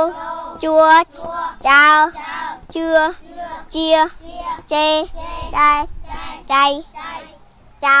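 Young children chanting Khmer syllables together in a sing-song recitation, a loud held syllable about once a second with softer syllables between.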